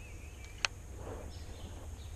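A single sharp click about two-thirds of a second in, from the baitcasting rod and reel during a pitch cast, over a steady low background hum.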